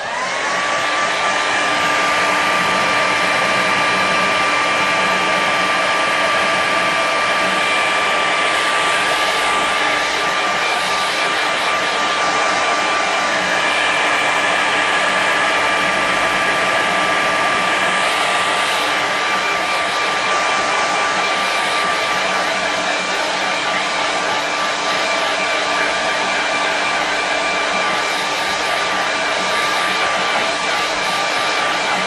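Hand-held hair dryer switched on and blowing across a wet watercolour painting to dry the paint. Its motor whine rises as it spins up, then it runs steadily.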